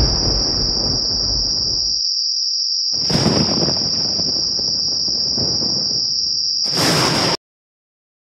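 A steady high-pitched insect-like trill over deep rumbling noise. The rumble drops out about two seconds in and returns a second later, then all of it cuts off suddenly near the end.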